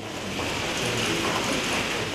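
Dense, steady clicking of many press camera shutters firing during a handshake photo opportunity.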